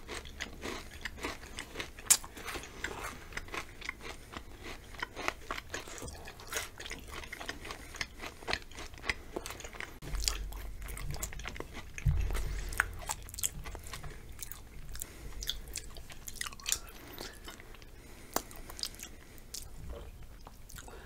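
Close-miked chewing of chocolate-covered potato chips, a dense run of small crisp crackles and clicks with a sharper crunch about two seconds in. A low rumble sits underneath from about halfway.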